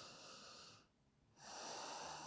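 Faint, slow, deep breathing by a person: one breath trails off within the first second, and the next begins about a second and a half in.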